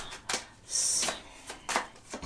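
A deck of tarot cards being shuffled by hand: a few soft card slaps and clicks, with a brief sliding hiss of cards about a third of the way in.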